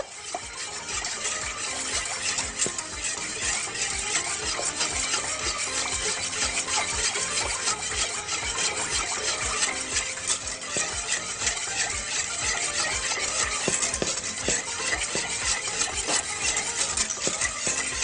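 Wire whisk stirring a thin milk and starch mixture in a saucepan, a steady fast clicking and swishing of the wires against the pot.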